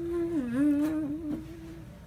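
A boy humming one held note that dips in pitch about half a second in, wavers back up, and stops shortly before the end.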